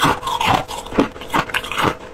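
Close-miked chewing of crushed flavoured ice: a steady series of crisp crunches, about two to three a second.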